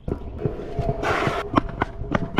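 Stunt scooter wheels rolling over brick pavers and concrete sidewalk, clicking and knocking over the joints. A short scraping hiss comes about a second in.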